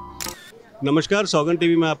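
A brief sharp click about a quarter second in, as the preceding background sound cuts off, followed after a short gap by a voice speaking.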